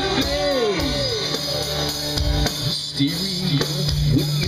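Live rock and roll band playing: electric guitars over a drum kit beat, with a sung line starting near the end.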